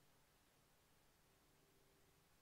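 Near silence: only a faint steady hum.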